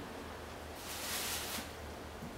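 Faint steady room hiss, with a brief soft rustle about a second in.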